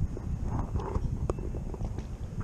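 Water sloshing and lapping against a waterproof GoPro housing held at the river surface, heard as a muffled, uneven low rumble. A single click comes just past a second in.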